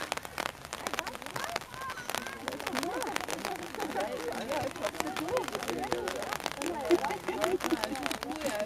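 Several distant voices calling and chattering over one another across a football pitch: girls' youth players and sideline spectators during play, with scattered faint clicks.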